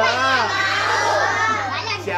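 A group of young children's voices calling out and shouting over one another, high-pitched, with no single speaker standing out.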